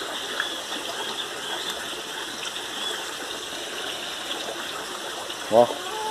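Water running steadily through a backyard aquaponics system, a continuous even flow.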